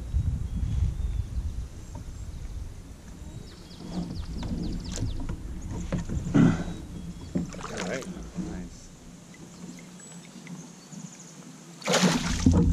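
Low rumble of wind and handling on the microphone, with a few brief indistinct voice sounds. Right at the end, a loud splash as a bass is released back into the water.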